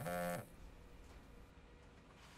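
A mobile phone buzzing once, a short steady buzz of under half a second: an incoming call.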